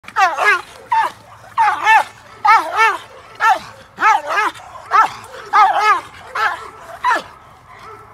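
A female American Bandog barking in a fast series of about fifteen barks, many in quick pairs, while she lunges on a tether at a handler brandishing a stick: aroused protection barking during agitation work. The barking stops about seven seconds in.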